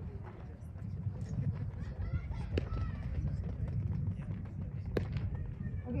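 Softball fielding drill: two sharp smacks of softballs being fielded and caught, about two and a half seconds apart, over a steady low rumble and faint voices of players.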